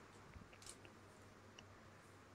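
Near silence, with two faint clicks about a third and two-thirds of a second in from a plastic mini tripod being handled.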